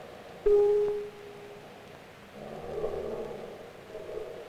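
Pitched tones on an experimental film soundtrack: a sudden loud held note about half a second in that fades within a second, then a wavering cluster of humming tones from about halfway through.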